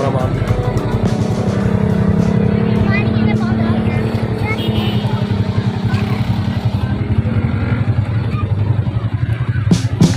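A vehicle engine running steadily, with music and voices in the background.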